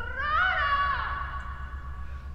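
A man's single long, drawn-out high call with no words. It rises in pitch over about half a second, then holds and fades away.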